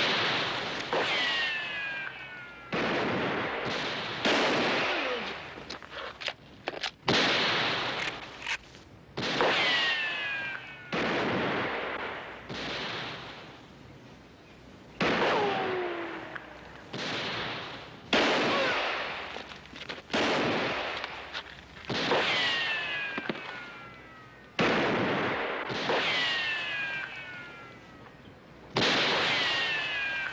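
A gunfight: about twenty gunshots, one every second or two, each with a long echoing decay. Several shots are followed by a thin falling whine of a ricochet.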